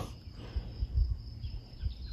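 Quiet pause: a faint, steady high-pitched insect trill over a light, uneven low rumble.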